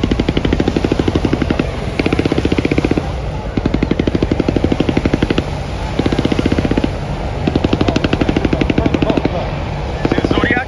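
Repeated bursts of rapid machine-gun fire, each lasting about one to two seconds with short breaks between, over the steady low rumble of helicopters.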